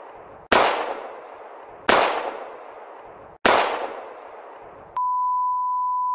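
Edited intro sound effects: three sharp hits about a second and a half apart, each dying away over about a second. About five seconds in they give way to a steady, high single-pitched test tone of the kind played with TV colour bars.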